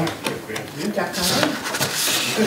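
A paper ballot rustling and scraping as it is pushed into the slot of a portable ballot box, with a few light clicks and knocks against the box.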